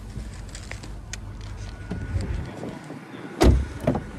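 Low rumble and handling clicks as someone climbs out of a Mercedes-Benz A-Class, then a car door shutting with a loud thud about three and a half seconds in, followed by a small click.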